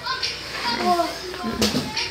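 Short wordless voice sounds from a baby and an adult, babbling and cooing, with a brief knock about one and a half seconds in.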